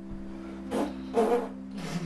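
A man's short, strained breathy grunts, three in a row, the last one sliding down in pitch, as he hunches over straining to reach his belly with his tongue. A steady low electrical hum runs underneath.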